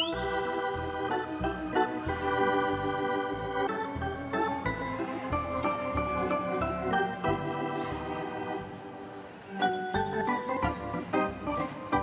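Organ music playing held chords. It dips briefly about nine seconds in, then picks up again with shorter, clipped notes.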